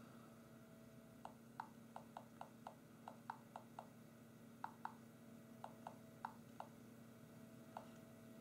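Faint, quick, irregular clicks of keys being tapped on an HTC Titan's on-screen touchscreen keyboard as a web address is typed, about eighteen taps in short runs with a pause around four seconds in.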